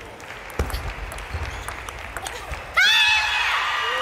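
Table tennis rally ending: a dull thud and sharp clicks of the ball on bats and table. About three seconds in comes a sudden burst of high-pitched shouts and cheering as the point is won.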